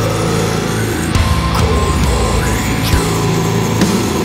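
Doom metal music: a dense, steady wall of heavy distorted guitars with a strong low end and a few sharp strokes.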